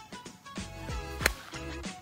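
Background music with a deep bass drum beat whose hits fall in pitch. A little past halfway, a single sharp click of a golf wedge striking the ball, the loudest sound.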